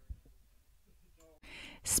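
Near-silent pause, then a short, soft intake of breath by the narrator about one and a half seconds in, just before her voice resumes.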